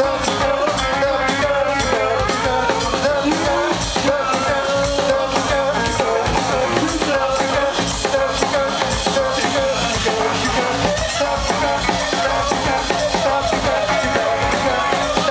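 Live band music: saxophones playing over a drum kit's steady beat.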